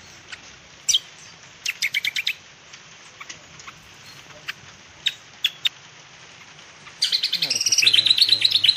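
Small bird chirping: a single high chirp about a second in, a quick run of chirps near two seconds, a few lone chirps around five seconds, then a rapid, dense chattering series of chirps from about seven seconds in.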